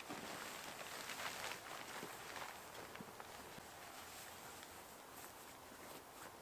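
Faint rustling of a tarp and shuffling over dry grass as someone crawls about under the shelter, with a few soft ticks early on that die away in the last few seconds.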